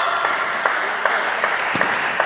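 Spectators applauding a won point in table tennis, with a voice calling out at the start.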